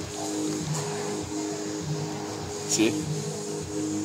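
Background music with steady held notes, and a single spoken word near the end.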